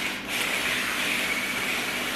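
Hose spray nozzle on its mist setting, hissing steadily as it sprays water onto a tray of potting soil, with a brief dip just after the start.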